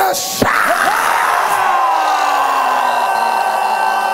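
Excited shouting and whooping from voices, with one long shout sliding slowly down in pitch over a few seconds.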